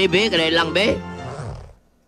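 A drawn-out, wavering voice over background music, trailing into a breathy hiss that fades out about a second and a half in.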